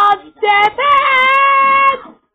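High voices singing from a cartoon soundtrack played through a TV speaker: two short notes, then one long held note.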